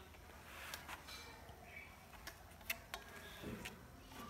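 Faint room tone with a few scattered light clicks and taps from a hand handling loose speaker woofer drivers, the sharpest click about two-thirds of the way through.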